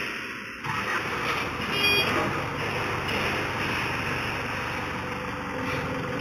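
Forklift engine running steadily while it holds a load, with a brief high tone about two seconds in.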